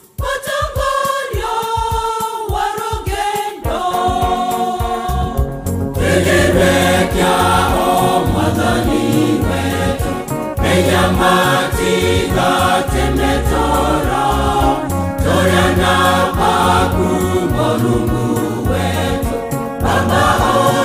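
Gospel choir singing in harmony over backing music. A low bass line and steady beat fill in about five seconds in, and the song grows fuller and louder.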